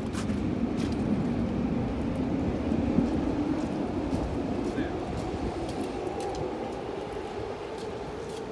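Low rumble of a passing vehicle, swelling to about three seconds in and then slowly fading, with light footsteps and clicks on wet pavement.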